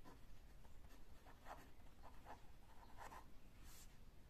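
Faint scratching of a pen writing a word on ruled paper, a series of short strokes.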